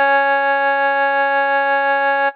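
A single C-sharp note held steady in a melodica tutorial melody, with a bright, reedy, unchanging tone and no decay.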